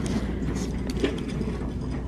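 Steady low background hum of a store, with a few faint clicks and rustles as clothes on plastic hangers are handled on a rack.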